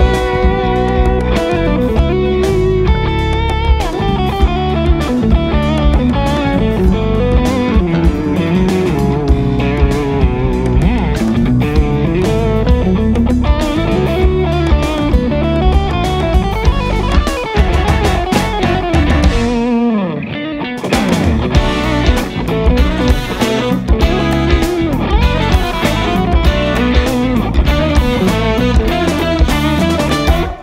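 Lead electric guitar on a Fender Stratocaster, playing an instrumental melody over a backing track with drums. About twenty seconds in the music briefly thins out with a falling pitch glide, then the full band comes back in.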